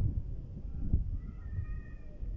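Low, uneven rumble of wind and handling noise on a handheld phone microphone outdoors, with a brief high-pitched steady tone starting about halfway through and lasting under a second.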